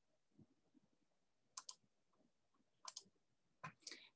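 Faint computer mouse clicks, in three quick pairs, against near silence.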